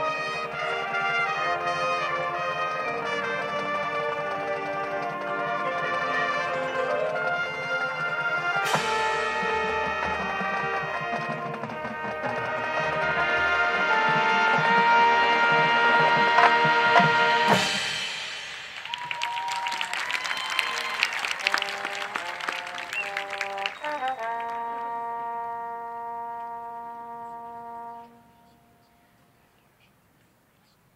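Marching band brass and front-ensemble percussion playing full sustained chords, swelling to a loud peak that stops on a hit about 17 seconds in. A softer, thinner passage follows with struck and bending notes, ending on a held chord that cuts off sharply about two seconds before the end.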